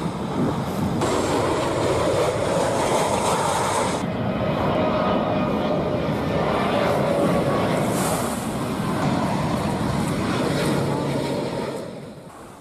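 Jet airliners flying low overhead on landing approach: loud, steady jet engine noise, changing abruptly twice as the footage cuts from one plane to the next.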